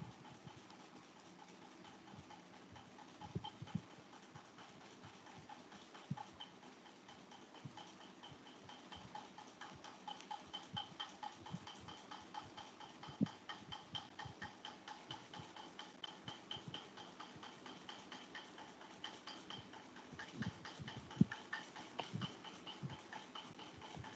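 Faint, even ticking, several ticks a second, that grows in about a third of the way in and fades a few seconds before the end, with a few louder single clicks.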